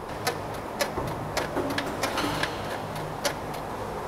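Rear stabilizer (anti-roll) bar of a Mercedes SLK200 (R172) working in its rubber bushing, giving a string of irregular clicks and short creaks. This is the 'kkugeok-kkugeok' bushing creak: the aged rubber has lost its oil and hardened, so the bar and the bushing move separately and knock against each other.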